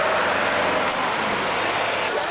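A Citroën XM saloon and escort motorcycles driving past close by: a steady rush of engine and road noise that cuts off suddenly at the end.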